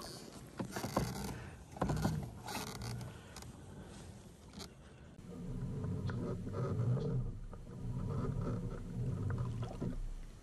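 A small fish splashing back into the lake beside a plastic kayak, with a few clattering knocks on the hull in the first seconds. From about halfway through, a low rumble swells and fades roughly once a second.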